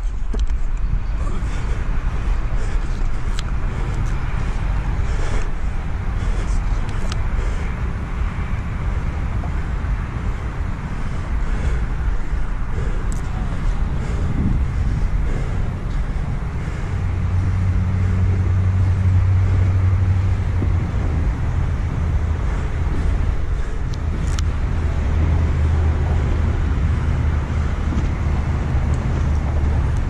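Steady outdoor rumble with a low motor-vehicle engine hum that comes in about seventeen seconds in and holds steady, with a few faint clicks.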